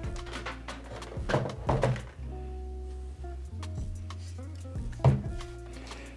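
Background music with a steady low beat, over which come a few knocks and thunks as driftwood is set into a glass aquarium and the tank's hinged plastic lid is lowered. The sharpest thunk is about five seconds in.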